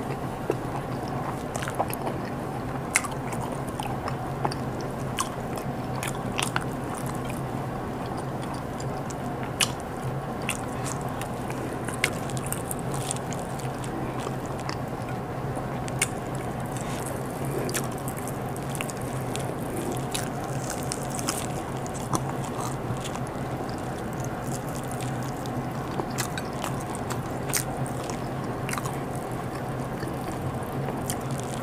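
Close-miked chewing of stewed chicken, with wet mouth sounds and sharp lip-smack clicks every second or two over a steady low hum.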